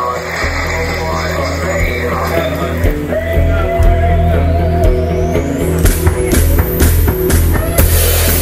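Live rock band jamming. A heavy bass line comes in just after the start, a rising sweep climbs to a high pitch over the middle, and regular drum and cymbal hits come in near the end.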